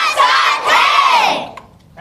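A large group of children shouting together on cue, one loud cheer lasting about a second and a half before it dies away.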